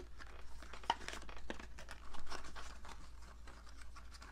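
A small cardboard product box being worked open by hand, its flaps and packaging rustling and crinkling in short, irregular crackles and clicks.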